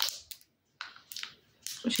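A few brief, faint crinkles of a small clear plastic bag holding a metal pin badge as it is turned in the fingers.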